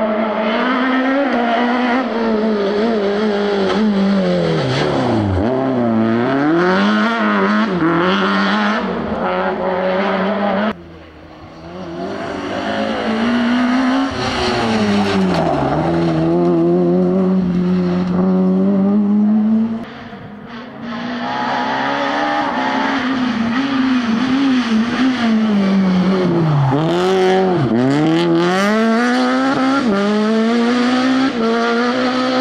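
Rally car engines driven hard through corners, one car after another, each revving up and dropping in pitch repeatedly on gear changes and lifts. The sound breaks off abruptly about 11 and 20 seconds in as the next car takes over.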